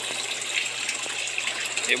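Water gushing steadily through the PVC plumbing of a small home aquaponics system just after a discharge ('descarga') from the tank, over a low steady hum.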